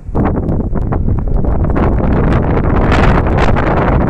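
Wind buffeting a phone microphone: a loud, rumbling rush that sets in abruptly and holds steadily, flickering.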